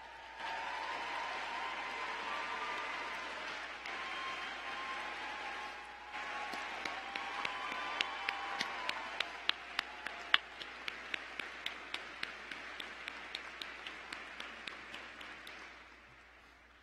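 Large audience applauding, with some cheering in the first half. From about halfway through, one nearby pair of hands claps sharply about three times a second over the crowd, and the applause fades toward the end.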